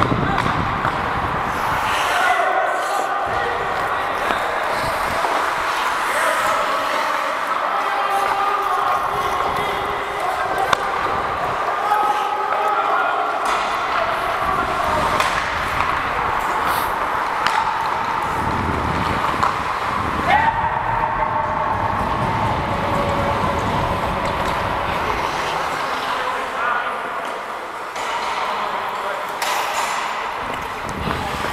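Ice hockey play heard from a skating referee: continuous skate-on-ice noise, scattered sharp knocks of sticks and puck, and distant players' calls echoing in the rink.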